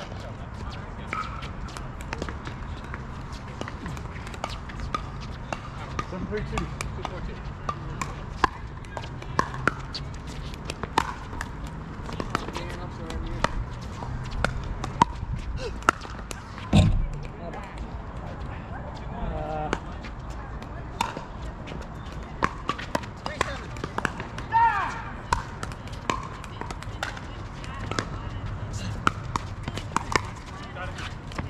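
Pickleball paddles striking a hard plastic pickleball again and again in sharp, irregular pops during rallies, over a steady low outdoor rumble, with a louder thump about halfway through and faint voices now and then.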